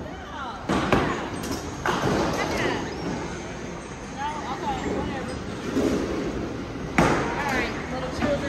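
Bowling alley din: sharp knocks and clatter of bowling balls and pins on the lanes, several close together about a second or two in and another near the end, over a background of voices.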